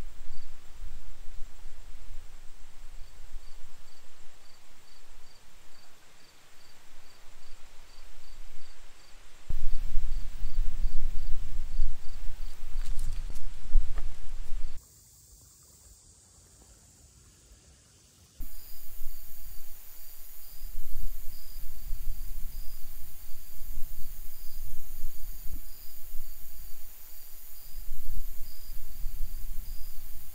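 Wind gusting over the microphone in uneven low buffets, with an insect chirping steadily in the background, one or two short chirps a second. In the middle the sound cuts out to near silence for a few seconds.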